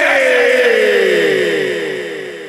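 Cartoon magic-spell sound effect: a cluster of tones gliding down in pitch again and again, loud at first and fading away in the second half.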